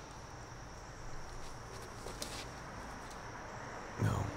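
Faint outdoor ambience in summer woodland: a steady high-pitched insect drone, with one brief sharp noise a little over two seconds in.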